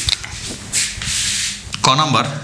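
Marker pen rubbing across a whiteboard in a stroke of writing, a hiss lasting about a second in the middle.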